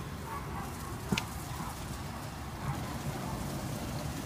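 Steady hiss of a garden hose spraying water, with one short sharp click about a second in.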